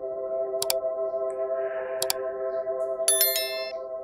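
Soft ambient drone music holding a steady chord, over which two sharp mouse-click effects sound, then a bright bell ding about three seconds in: the sound effects of an on-screen like-and-subscribe animation.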